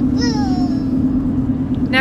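Steady engine and road drone inside a moving car's cabin. During the first second a child gives one high vocal sound that falls in pitch.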